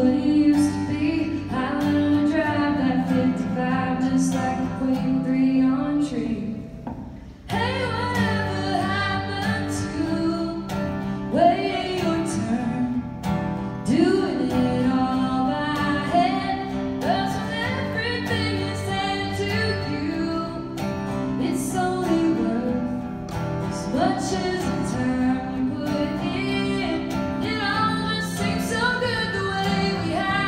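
Live acoustic song: a woman singing with acoustic guitars strumming. The music drops away briefly about seven seconds in, then picks up again.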